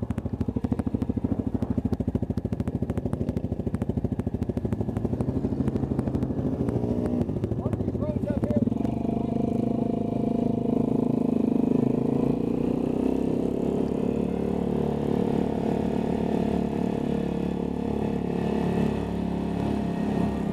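ATV engines at low speed with a rapid, even firing beat. From about eight seconds in they run at a steady, higher engine note as the quads ride along a dirt road.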